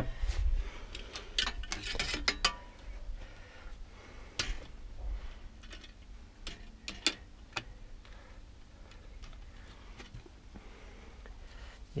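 Scattered metallic clicks and knocks of a steel bicycle handlebar and stem being handled and fitted to an old Romet Wigry-type bicycle frame. They are busiest in the first couple of seconds, then come as single clicks every few seconds.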